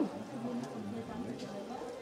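Faint voices of people talking some way off, quieter than the nearby speech around them.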